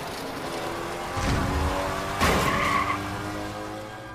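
Car tires skidding and vehicles rushing past, with sustained film-score music underneath. Two louder passing swells come about one and two seconds in, and the sound tapers off near the end.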